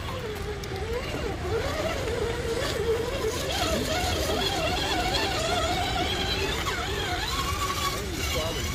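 Redcat Gen-7 RC rock crawler's electric motor and geared drivetrain whining as it crawls over rocks, the pitch wavering up and down with the throttle.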